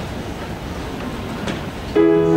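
Audience applause tailing off into a steady, even crowd noise in a large room, with one sharp click about a second and a half in.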